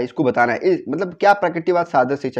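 A man speaking continuously in Hindi; only speech.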